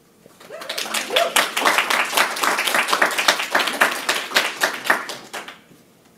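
Audience applauding. The clapping starts about half a second in, holds steady, and dies away near the end.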